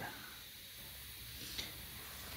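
Quiet background: a faint steady hiss with one light tick about one and a half seconds in.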